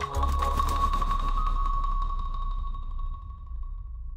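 A single high tone rings on and slowly fades over a steady low electronic drone from the piece's digital audio track, with no marimba notes struck.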